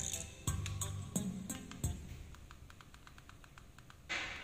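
Music playing through a pair of karaoke loudspeakers: a backing track with bass and struck notes that grows quieter after about two seconds, leaving a faint, fast, regular ticking.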